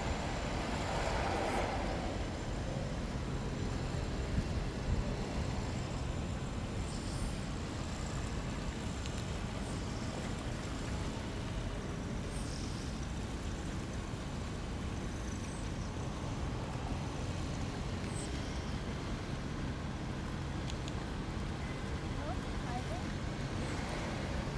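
Steady low rumble of distant road traffic, with a faint engine hum that comes and goes and brief voices fading out near the start.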